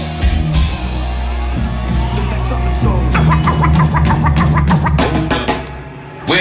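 A live DJ set of old-school hip-hop, loud through a club PA, over a heavy bass beat. A quick run of repeated turntable scratches comes in the second half, and the music cuts out briefly near the end.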